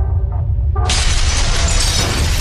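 Intro sound effects: a deep rumbling drone, then, a little under a second in, a sudden loud shattering crash that keeps on crackling as the pieces break apart.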